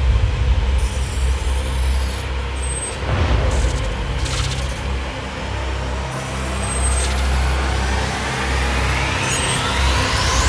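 Cinematic intro sound design: a deep, steady bass rumble under a hissing noise bed, opening with a hit. A rising sweep builds up through the second half.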